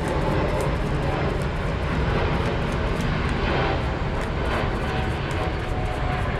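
A steady, even rumble of outdoor background noise, strongest in the low end, with faint light clicks of a tarot deck being shuffled by hand.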